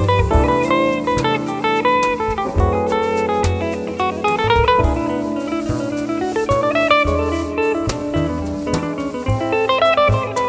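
Jazz quartet playing live: guitar leading with a line of single notes over upright double bass, piano and drum kit.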